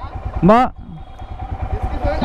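Royal Enfield Himalayan's single-cylinder engine idling with an even, low pulse. A man's voice gives one short rising-and-falling call about half a second in.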